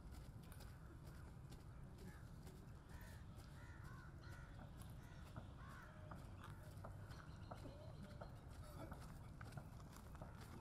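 Near silence: faint open-air ambience with a low rumble, a few distant crow caws in the middle, and soft footsteps from the slow-marching pallbearers.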